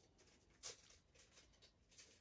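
Near silence: quiet room tone with a few faint soft clicks, one slightly louder about two-thirds of a second in.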